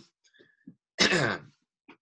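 A man clears his throat once, about a second in: one short, rough sound falling in pitch, lasting about half a second.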